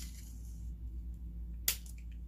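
Tape being wrapped by hand around the handles of two plastic spoons: a faint rustling, then one sharp click a little before the end.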